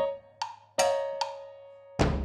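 Cowbells struck three times, each stroke ringing with a clear metallic pitch. The third rings on and slowly fades.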